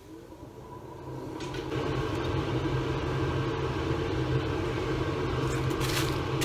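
A kitchen appliance fan spinning up over the first second or two, then running steadily with a low hum.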